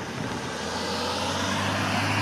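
A car passing close by with tyre and engine noise, joined about half a second in by a steady low engine hum that grows louder as a large road vehicle, a bus, approaches.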